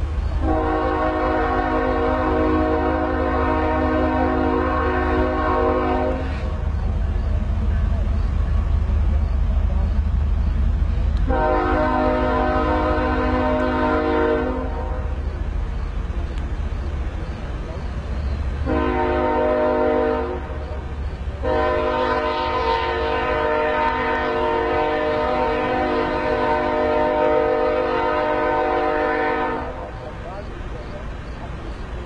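Train horn sounding four blasts of several notes at once in the long-long-short-long pattern of a grade-crossing warning, the last blast about eight seconds long, over a steady low rumble.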